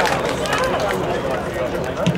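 Football stadium ambience: indistinct shouting voices of players and a sparse crowd over a steady background murmur, with no clear words.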